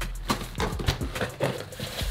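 Cardboard shipping box being handled as its flaps are pushed aside and the contents shifted: a string of irregular taps, knocks and scrapes of cardboard.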